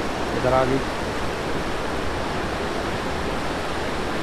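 Rain-swollen mountain river rushing over boulders: a steady, loud whitewater noise.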